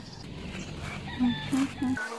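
Chickens clucking, with a few short calls in the second half.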